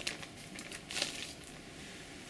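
A clear plastic bag crinkles as a drive-enclosure cover is slid out of it. The crinkling comes in bursts, loudest near the start and again about a second in.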